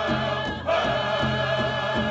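Oklahoma pow-wow song: a group of men singing together, holding long notes, over steady, evenly spaced beats on a pow-wow drum. The voices pick up again after a short break about half a second in.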